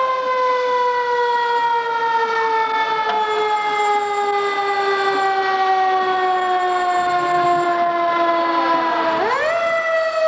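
Fire truck siren winding slowly down in pitch for about nine seconds, then spun quickly back up to a higher pitch near the end.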